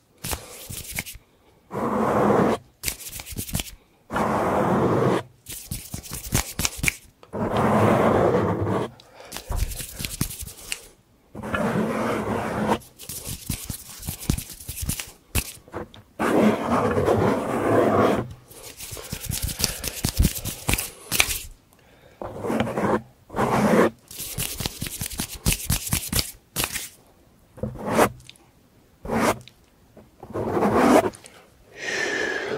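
Fingers scratching, tapping and rubbing the foam windscreen of a handheld Zoom recorder's microphone, in quick irregular bursts of a second or two with short pauses, many sharp clicks scattered through them.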